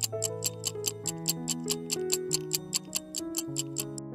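Quiz countdown timer's clock-tick sound effect, a fast steady ticking of about five ticks a second, over background music of slow, held notes.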